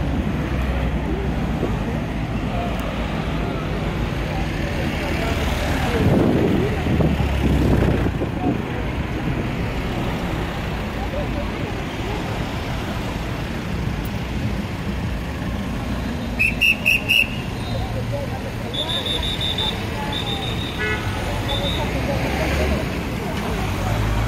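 City street traffic: cars driving past close by at a crossing, louder for a couple of seconds about a quarter of the way in. About two-thirds of the way through, a car horn sounds in about four short toots, followed by fainter high beeps.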